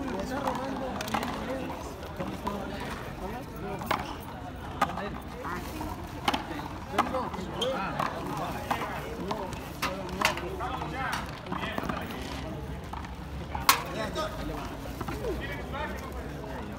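Handball struck by bare hands and smacking against the frontón wall and concrete floor during a rally: sharp smacks at irregular intervals, the loudest about two seconds before the end. Voices chatter underneath.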